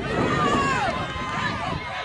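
Spectators yelling and cheering on a football play, many voices overlapping and loudest about half a second in.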